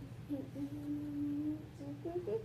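A person humming one long, steady note lasting about a second and a half, with brief shorter hums just before and after it.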